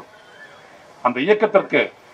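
A man speaking in Tamil into a microphone: a pause of about a second, then a short spoken phrase.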